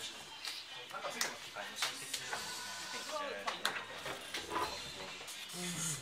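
Indistinct background voices with faint music, and a few light clicks.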